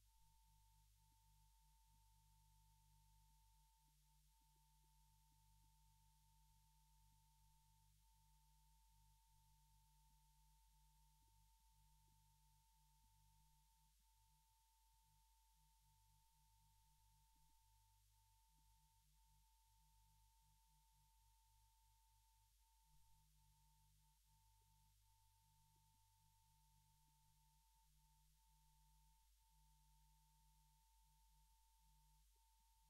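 Near silence: only a very faint steady high tone and a low hum, unchanging throughout.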